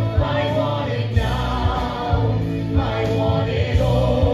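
A musical number: several voices singing together over a heavy bass line, with drum hits through it.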